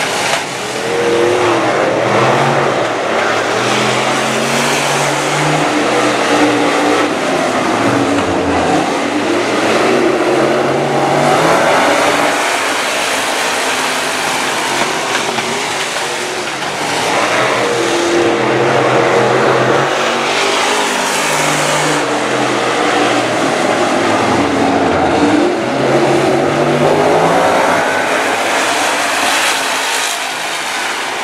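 A pack of dirt-track stock cars racing, their engines revving up and easing off through the turns. The pitch rises and falls over and over as the cars come past on each lap.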